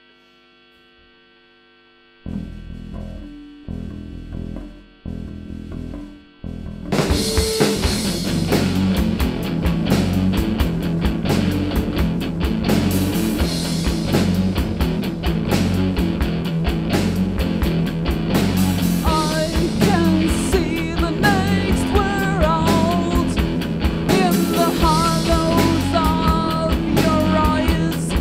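Live rock band starting a heavy song. After a brief amplifier hum, a few low notes sound, then drums, electric guitar and bass guitar come in loud at about seven seconds, and a voice starts singing about two-thirds of the way in.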